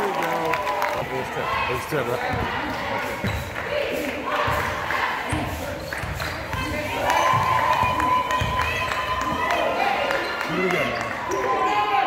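Basketball dribbled on a hardwood gym floor, a run of bounces, with players' and spectators' voices around it.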